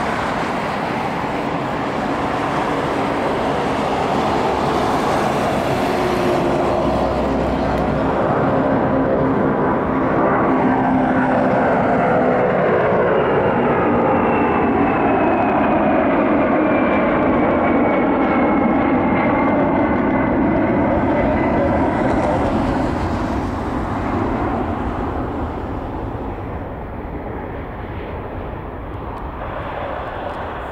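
Boeing 747SP's four jet engines at takeoff power as it lifts off and climbs out: a loud roar that builds to a peak as the jet passes, with a high whine sliding down in pitch midway, then fades as it flies away.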